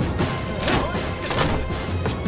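Dramatic film score with fight sound effects laid over it: a few sharp hits and thuds, about three or four in two seconds, over a steady bass-heavy music bed.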